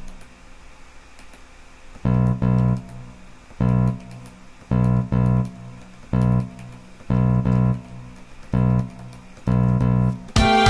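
Sampled bass from MuseScore sounding the same low note in short bursts, each of two quick attacks. About seven bursts come roughly once a second or a little slower, starting about two seconds in, with quiet gaps between: the bass part being built up a few notes at a time.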